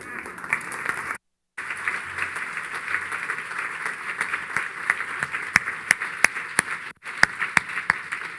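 Audience applause: a room full of people clapping steadily, with a few sharper individual claps standing out near the end. The sound drops out completely for a moment about a second in.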